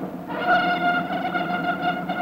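Orchestral title music with brass holding a long sustained chord that swells in shortly after the start.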